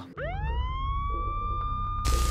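A police siren winding up: a wail that rises quickly in pitch over the first second, then holds steady, over a low rumble.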